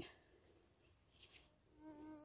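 Near silence in the forest, broken by a brief tap at the start and faint rustles, then a flying insect buzzing faintly past, wavering slightly in pitch, near the end.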